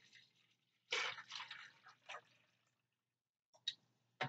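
Water poured from a glass pitcher, heard faintly as a short splash about a second in that trails off, with a light click near the end.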